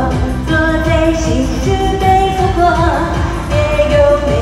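Loud Chinese pop song performed live: a woman singing into a handheld microphone over an amplified backing track with a steady beat.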